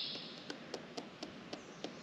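Quiet outdoor background with a few faint, irregular clicks.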